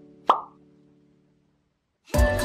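A single quick cartoon pop sound effect about a third of a second in, over the fading tail of a held music chord.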